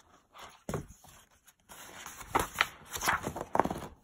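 Paper page of a large hardcover picture book being handled and turned: a sharp tap under a second in, then a couple of seconds of rustling, sliding paper.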